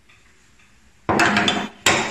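An old wooden hand plane being set down on a wooden workbench. There is a clatter of knocks about a second in, then a single sharp knock near the end.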